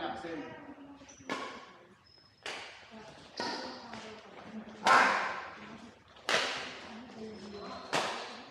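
Badminton rackets hitting a shuttlecock back and forth in a rally, about six sharp strikes a second to a second and a half apart, the loudest about five seconds in, each ringing in a large hall.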